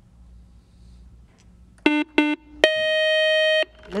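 Quiz-show contestant buzzer signalling a buzz-in: two short electronic beeps about two seconds in, then a higher steady tone lasting about a second.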